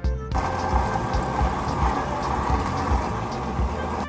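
Electric blender running steadily, grinding raw chicken. It starts about a third of a second in and stops abruptly at the end.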